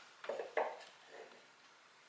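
Stemmed wine glasses being set down on a wooden shelf: a few faint knocks and clinks in the first second or so.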